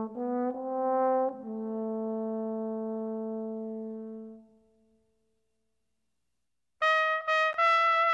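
Solo trombone playing a slow phrase of a few notes, ending on a long held low note that fades out about four and a half seconds in. After a pause of about two seconds, a trumpet comes in near the end with short notes, higher in pitch.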